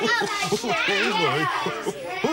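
Several children talking and laughing over one another, with no single voice standing out.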